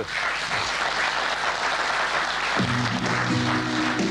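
Studio audience applauding. Just past halfway, a music jingle of held notes comes in over the clapping.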